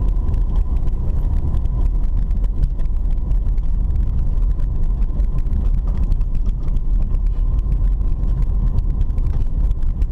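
Car driving on an unpaved dirt road, heard from inside the cabin: a steady low rumble of engine and tyres on the rough surface, with frequent light ticks and rattles and a faint steady tone.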